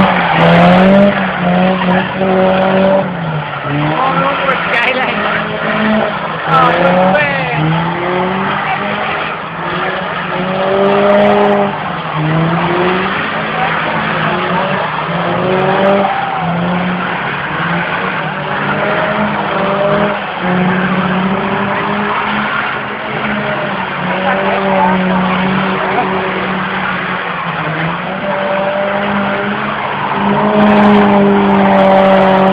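Cars drifting on tarmac: engines revving up and down over and over, with tyres squealing as they slide.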